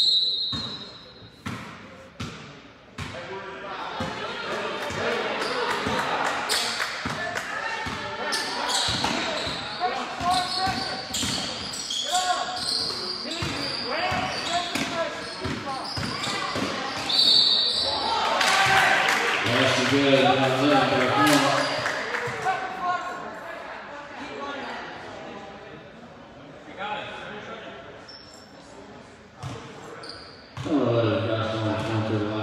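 Basketball game in a gym: a ball bouncing on the hardwood court among voices calling out, with a short referee's whistle blast at the start and another about seventeen seconds in. A man's voice rises loudly for a few seconds around twenty seconds in.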